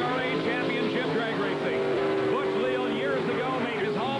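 Pro Stock drag car's big carbureted V8 held at high, steady revs during a burnout, its rear slicks spinning in tyre smoke.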